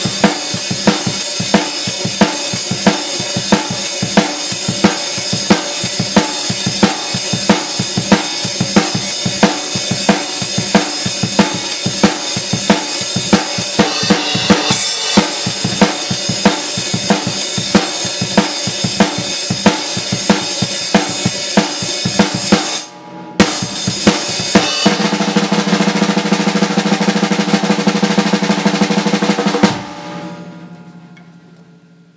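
Acoustic drum kit with Zildjian cymbals played in a steady rock beat, the bass drum on the quiet side. The beat breaks off briefly about 23 seconds in, then the kit comes back in a dense run of fast strokes under ringing cymbals that stops suddenly at the end and rings out.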